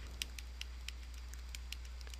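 Faint, irregular light clicks of a stylus tip tapping and dragging on a tablet screen as a word is handwritten, about four a second, over a steady low electrical hum.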